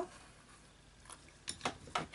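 A few light clicks and clinks as a hot glue gun is lifted from a ceramic dish: one about a second in, then a quick cluster of three near the end.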